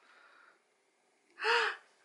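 A young girl's single short gasp-like vocal exclamation, its pitch rising then falling, about one and a half seconds in after a near-silent pause.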